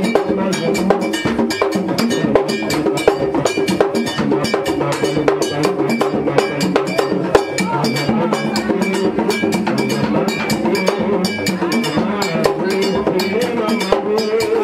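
Haitian Vodou ceremonial drumming: a metal bell struck in a fast, steady rhythm over hand drums, playing continuously for the dance.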